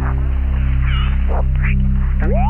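Electro-acoustic music: a steady, pulsing low drone of stacked tones, with about four short bursts of shortwave-radio tuning noise, crackly warbles and a brief squeal, laid over it.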